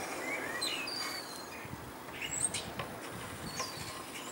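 Birds chirping: scattered short, high calls over a faint steady background hiss.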